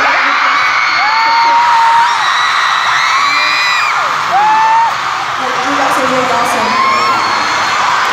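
Large arena crowd of fans screaming and cheering, with single high-pitched screams held for about a second rising above the din.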